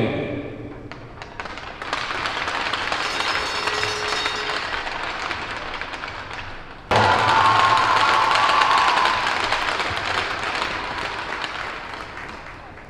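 Arena crowd applauding, beginning with a few scattered claps that build into steady applause. About seven seconds in the sound cuts abruptly to louder applause, which then slowly fades.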